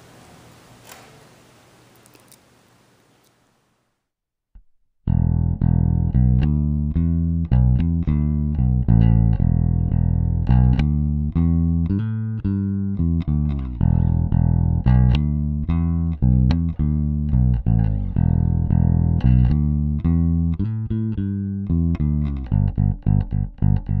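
Electric bass guitar recorded direct through a DI box, clean and dry. After about five seconds of faint room tone, a loud bass line of ringing plucked notes comes in, turning into quick repeated notes near the end.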